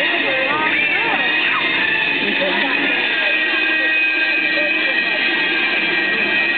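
Indistinct voices and chatter over a steady high-pitched whine.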